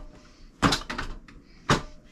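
Hands and forearms knocking against the arms and body of a four-armed Wing Chun dummy: a sharp knock about a third of the way in, a quick run of lighter knocks just after it, and another sharp knock near the end.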